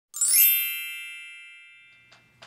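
A bright, bell-like electronic chime rings once with a quick upward shimmer as it starts, then fades away slowly.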